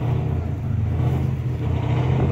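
Rally truck engine running with a steady low drone as the truck comes down the stage.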